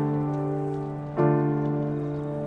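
Slow, gentle instrumental piano music: a held chord fading, then a new low chord struck about a second in, over a faint steady hiss of background ambience.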